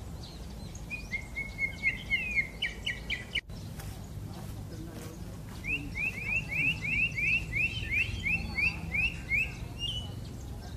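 Common blackbird singing: a short phrase of quick clear notes that breaks off abruptly about three seconds in, then, after a pause, a run of about fifteen short, sharp repeated notes at about four a second.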